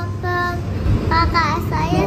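A young child's voice singing a short sung phrase, with held notes and sliding pitch.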